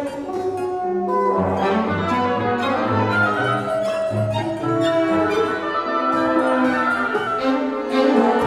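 Chamber orchestra playing a contemporary classical piece: bowed strings with oboes, bassoon, horns and harpsichord, over a bass line moving in separate steps.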